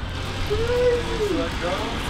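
Mostly a person's voice, one call held for about a second, over a steady low rumble of street traffic.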